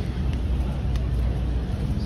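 Steady low rumble of downtown street noise with traffic, with no single event standing out.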